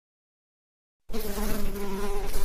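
Bee buzzing: a steady, even hum that starts suddenly about a second in, after silence.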